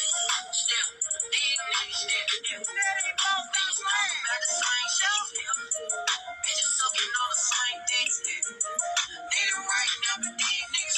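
Rap diss track playing: sung vocals with a heavy pitch-correction effect over a beat, the voice wavering and bending in pitch. It sounds through a small room.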